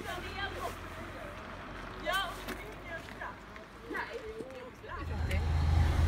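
A low vehicle rumble heard from inside a small car, with brief snatches of voices. The rumble grows louder about five seconds in.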